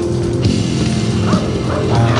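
Music playing steadily, with a few short rising cries over it, one about halfway through and another a little later.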